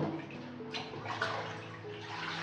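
Water splashing and dripping as handfuls of freshly shredded coconut are rinsed in a kitchen sink and dropped into a plastic colander, with a sharper splash right at the start and a couple of smaller ones after it.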